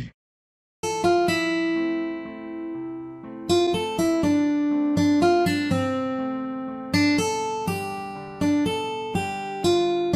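Background music: a slow melody of plucked acoustic guitar notes, each ringing out and fading, starting about a second in after a brief silence.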